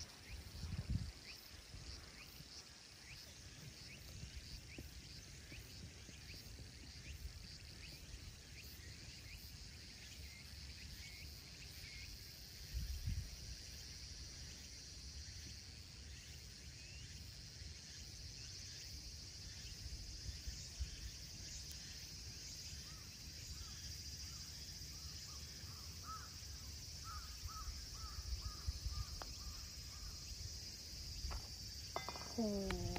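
Outdoor ambience: low wind rumble on the microphone, a steady high insect-like drone, and short repeated bird calls, with a run of them near the end.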